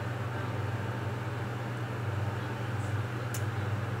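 Electric pedestal fan running: a steady low hum with an even rush of air noise, with a small click about three seconds in.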